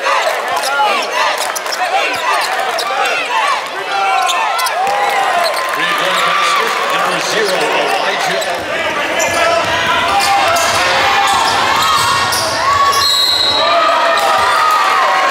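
Live basketball game sound in a large gym: a basketball bouncing on a hardwood court, many short sneaker squeaks and crowd voices. A fuller, lower crowd rumble comes in a little past halfway.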